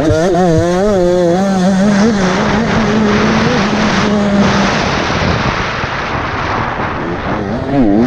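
Dirt bike engine ridden on an enduro track: the revs rise and fall over the first couple of seconds, hold steady for a few seconds on the straight, then go on under a steady rushing noise. Right at the end the revs drop sharply and climb again.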